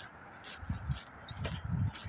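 Footsteps walking on wet gravel and dirt, a step about every half second.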